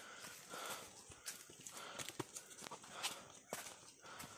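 Footsteps crunching and rustling on dry leaf litter and bamboo debris, an uneven series of light steps on a downhill forest path.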